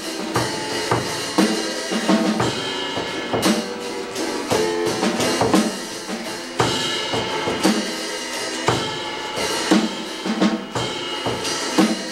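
Drum kit played in a steady rock beat, with kick, snare and cymbal hits, under sustained guitar chords. Recorded on a VHS camcorder.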